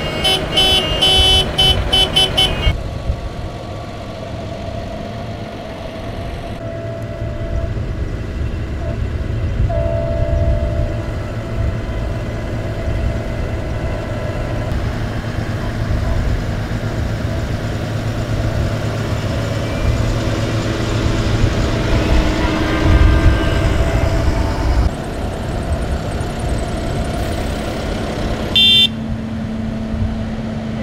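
A long convoy of farm tractors passing close by, their diesel engines running steadily, with horns honking: several horns sounding together for the first couple of seconds and one short loud blast near the end.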